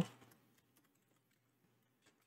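Faint computer keyboard typing: a loose scatter of soft key clicks.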